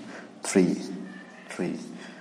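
A man's voice counting aloud: two short spoken numbers about a second apart.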